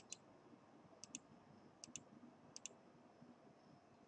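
Computer mouse button clicking faintly: four quick press-and-release pairs of clicks, a little under a second apart, over quiet room tone.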